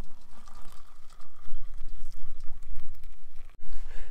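Wind buffeting the microphone: an uneven low rumble that rises and falls, over a faint steady hiss. The sound breaks off for an instant near the end.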